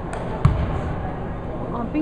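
A basketball bouncing once on a hardwood gym floor: a single low thump about half a second in, over background voices.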